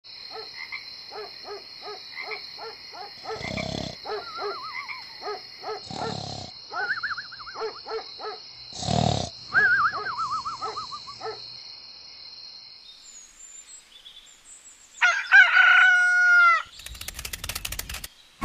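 Night-time sound-effect ambience: frogs croaking in a quick regular rhythm over a steady high insect trill, with a cartoon snore repeated three times, each a rasping breath followed by a wavering whistle. About 15 s in a rooster crows loudly, and a brief clatter follows near the end.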